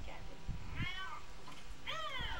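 A toddler's high-pitched wordless calls: one a little before halfway through and another starting right at the end, each rising and then falling in pitch.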